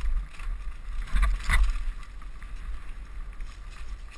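Mountain bike rolling fast down a rough dirt trail: a steady low rumble of wind on the helmet camera's microphone, with two sharp knocks from the bike jolting over bumps about a second and a half in.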